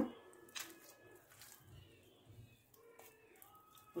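Quiet room with faint bird calls. There is a soft click about half a second in and light handling sounds as oiled hands press into a bowl of risen yeast dough.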